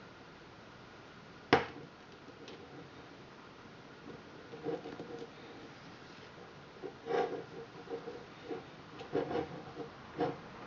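Plastic round knitting loom being worked as loops are lifted off its pegs with a needle during the cast-off: one sharp click near the start, then scattered light clicks and taps in small clusters.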